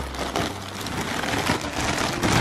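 Clear plastic packing bag crinkling and rustling as a hand rummages through it inside a new fabric cabin bag, a dense crackle of small clicks.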